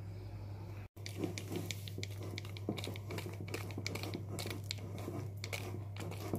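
Wire whisk mixing eggs into flour in a glass bowl, its wires making quick irregular ticks and scrapes against the glass, over a steady low hum. A brief gap in the sound comes just before the one-second mark.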